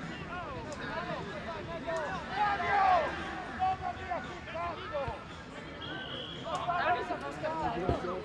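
Footballers' voices calling and shouting to each other across an outdoor pitch during play, scattered and overlapping, louder in a cluster near the end. About six seconds in, a brief steady high tone sounds over the voices.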